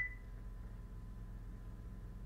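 Steady low electrical hum with a faint steady high tone underneath and no speech. The fading tail of a short beep is heard right at the start.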